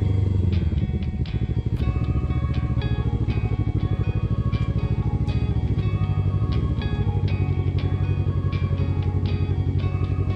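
A sport motorcycle's engine settles from riding throttle to a low, fast-pulsing idle about a second in as the bike rolls slowly to a stop. Background music with short plucked notes plays over it.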